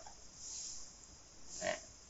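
A pause in a man's talk: a faint breath, then near the end a short grunted 'à' filler sound from the same voice.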